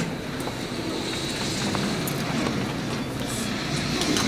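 Steady, indistinct room noise of a crowded function room: a low murmur of people and movement, with a faint steady high whine.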